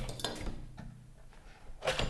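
Large metal bulldog clips being unclipped from the edge of a wooden drawing board and handled, giving a few metallic clinks and clacks, the loudest near the end.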